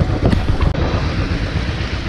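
Wind buffeting the microphone on a moving Royal Enfield Bullet 500 motorcycle, with the bike's single-cylinder engine running underneath. The sound is loud and rough throughout, mostly low rumble.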